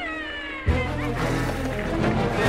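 A high, wavering cry sliding down in pitch, then a sudden loud horror-film music sting about two-thirds of a second in, over a low sustained drone.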